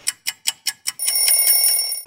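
Alarm clock sound effect: five quick ticks, then about a second in a loud, high bell ring that stops abruptly.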